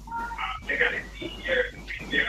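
Indistinct voices coming over a video-call connection, the words unclear.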